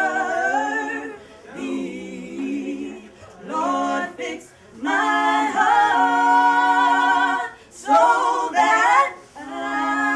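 Three women singing a gospel song a cappella in close harmony, with no instruments. They hold long notes in phrases of one to three seconds, broken by short pauses for breath.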